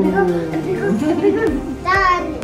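A young child's playful vocalizing without clear words: a long drawn-out voice sound in the first second, then short bits of voice, and a brief high-pitched squeal near the end.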